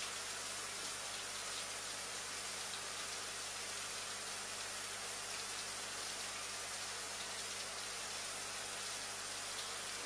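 Steady low hiss with a faint low hum underneath and no distinct events: room tone or the recording's noise floor.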